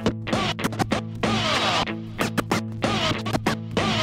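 Music with turntable scratching over a steady bass line: quick scratch strokes and sweeping pitch glides, starting suddenly.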